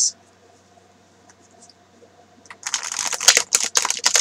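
A Legacy of the Divine tarot deck being shuffled by hand: quiet at first, then from about two and a half seconds in a fast flurry of crisp card snaps.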